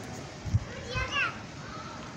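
A child's voice calls out briefly about a second in, over a steady hum of outdoor background noise. A sharp low thump comes just before it, about half a second in.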